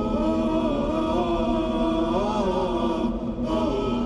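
Slow vocal chant with long held notes that glide gently up and down, over a low steady drone.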